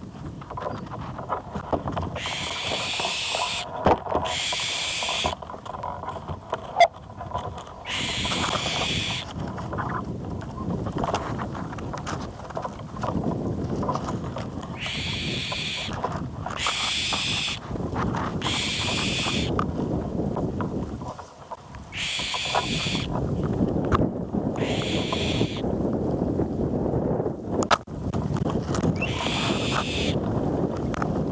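Wind noise on the microphone of a camera mounted beside a tree, with leaves rustling against it. Over this come about ten high, buzzing sounds, each about a second long, singly or in pairs.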